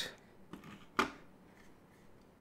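Black plastic housing shells of a smart wall switch being handled and separated: light handling noise with a small click, then a single sharp plastic click about a second in.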